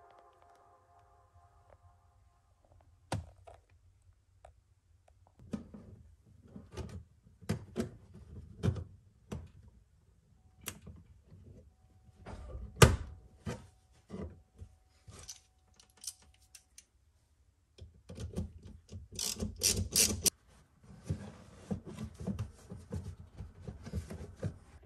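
Scattered clicks, knocks and clatter of hand work on a car's battery: the terminal nut is refitted with hand tools and the plastic battery-compartment cover is handled and set back in place. One sharp knock about halfway through is the loudest, and a short run of crisp rattling follows a few seconds later.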